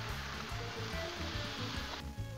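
Water hitting a hot griddle top and sizzling into steam, a steady hiss that cuts off near the end, under background music.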